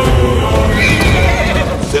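A horse whinnying, one wavering high call lasting about a second near the middle, over dramatic film score that fades just before it.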